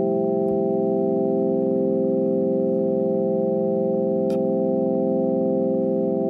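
A single chord held on an electronic keyboard with an organ-like sustained tone. It stays steady with no decay and wavers slowly, and there is a faint click about four seconds in.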